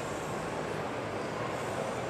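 Steady background noise of a large indoor shopping-mall concourse, an even wash of sound with no distinct events.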